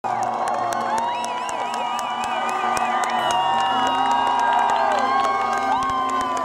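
A large arena crowd cheering, with shouts, warbling whistles and scattered hand claps, over a few steady held tones from the stage.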